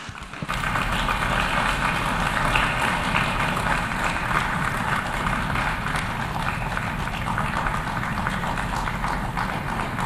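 Applause from an audience, starting about half a second in and holding steady.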